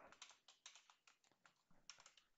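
Faint computer-keyboard typing: a dozen or so irregular key clicks.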